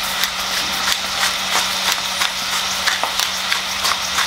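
Wooden pepper mill grinding peppercorns over a steak: a quick, uneven run of small clicks, over a steady low hum.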